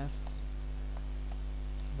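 Computer keyboard being typed: a handful of separate, faint key clicks as a line of code is finished and Enter is pressed, over a steady low hum.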